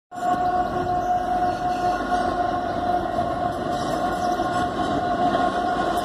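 Norfolk Southern diesel freight locomotive's air horn sounding one long, steady, held chord over the rumble of the train.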